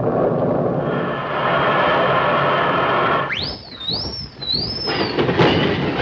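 Live stage sound effect of a flying saucer arriving: a steady, engine-like rumbling noise, then about three seconds in a high whistle that rises sharply and warbles up and down for about two seconds before fading.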